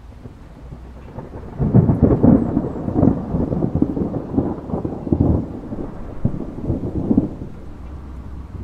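Rolling thunder rumbling in long, uneven swells, starting about a second and a half in and easing off near the end.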